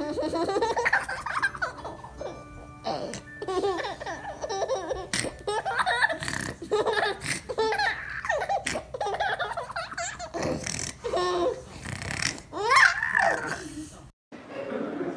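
A baby laughing in repeated short fits and giggles while being tickled by an adult's hand.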